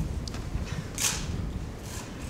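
Pen and paper sounds of a document being signed at a desk, with one short, sharp rustle about a second in.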